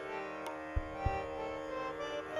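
Tanpura drone ringing steadily, its plucked strings sustaining a wash of held tones. About a second in, two deep thumps from the tabla's bass drum, the second with a short upward bend in pitch.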